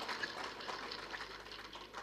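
Faint, steady background noise of a public-address microphone and venue, a lull between a man's spoken sentences; no distinct sound stands out.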